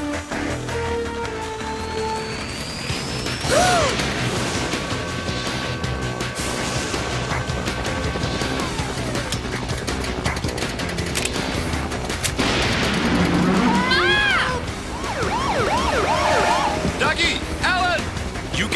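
Dramatic background music from an animated TV soundtrack, with sound effects mixed in: a rising whistle-like glide a few seconds in and a cluster of short rising-and-falling tones near the end.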